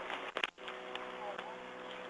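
Police radio channel keyed open: hiss cut off above the voice band with a steady hum running through it and faint voice traces. A sharp click and a short drop about half a second in, where one transmission ends and the next opens.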